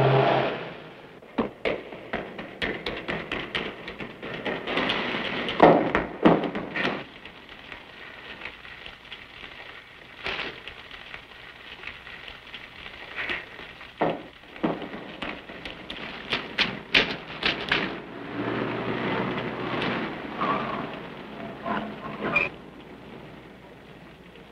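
Irregular footsteps and knocks echoing in a concrete storm-drain tunnel, uneven and busiest early and late. A car's engine passes above for a couple of seconds near the end.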